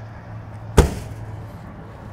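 An RV's exterior storage compartment door swung shut, latching with one sharp clack a little under a second in, over a steady low hum.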